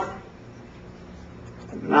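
A pause in a man's lecture: faint room tone with a low steady hum, between the end of one phrase and the start of the next word.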